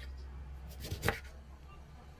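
Kitchen knife slicing through a lemon onto a wooden cutting board: one cut, the blade knocking on the board about a second in.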